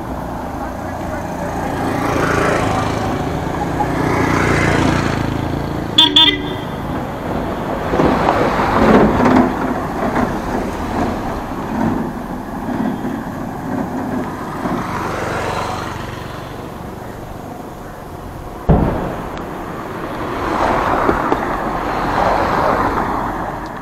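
Car driving on a road: steady road and engine noise that swells and fades. A vehicle horn gives a brief toot about six seconds in, and a single sharp knock comes about three seconds before the end.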